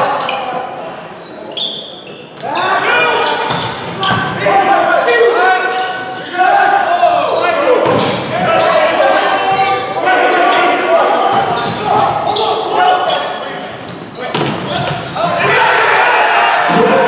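Players and spectators calling out and shouting in a reverberant gymnasium during a volleyball rally, with sharp smacks of the ball being hit, one of them about eight seconds in.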